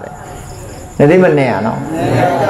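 A man's voice giving a Buddhist sermon resumes about a second in after a brief pause, with a faint steady high-pitched tone in the background.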